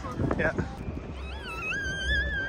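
A young child's long, high-pitched squeal with a wavering pitch, starting about halfway through, over a low rumble.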